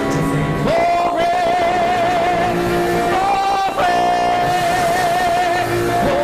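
A male gospel singer holding long notes with vibrato over instrumental accompaniment. The first long note starts a little under a second in, and another begins near the middle.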